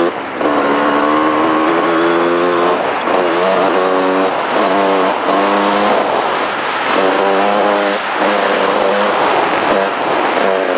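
Dirt bike engine ridden hard on a dirt track: its pitch climbs and drops again and again as the throttle is opened and closed, with a short cut in power just after the start. Wind rushes steadily over the bike-mounted microphone.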